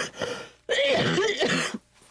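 A man coughing and clearing his throat in two rough fits, a short one at the start and a longer, louder one about a second in.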